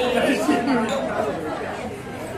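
Several people chatting over one another, voices overlapping.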